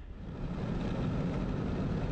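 Car driving at highway speed: a steady, low engine and road rumble that fades in over the first second.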